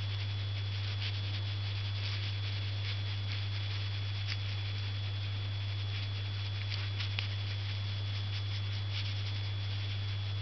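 Steady low hum with a thin high whine over it, and faint scratchy rustles of an ink brush dragged and dabbed on paper.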